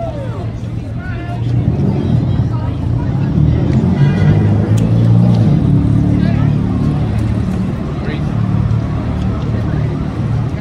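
Low road-traffic rumble from passing vehicles, swelling to its loudest in the middle, with tourists' chatter over it.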